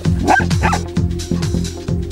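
Electronic dance music with a steady beat, over which a young dog gives two short, high yips within the first second.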